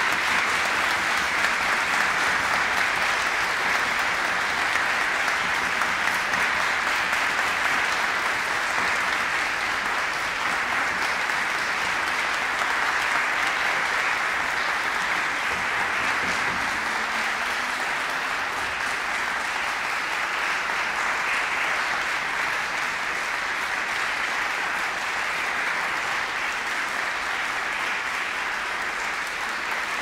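Applause from many people clapping, steady and dense throughout, easing slightly toward the end.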